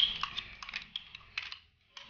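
Metal spoon clicking and scraping against a glass cup as dyed rice is scooped out onto a plastic tray: a quick run of light clicks that thins out and stops about a second and a half in.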